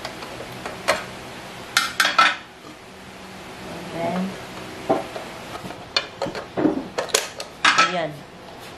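Removable cooking plates of an Asahi WM-043 waffle maker and panini press being unlatched, lifted out and snapped into place: a series of sharp clicks and clatter, loudest in a cluster about two seconds in and again near the end.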